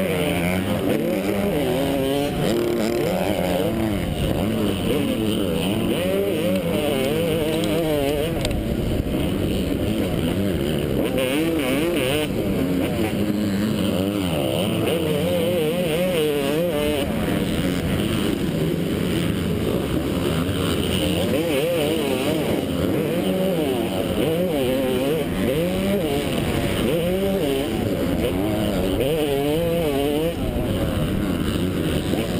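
Yamaha YZ250 two-stroke single-cylinder motocross engine at racing speed, heard from the rider's helmet, its pitch rising and falling again and again as the throttle is worked and gears are changed.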